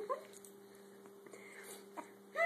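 Pekingese dog giving one short, faint whine at the tail of a yawn, over a steady low hum. A single click near the end.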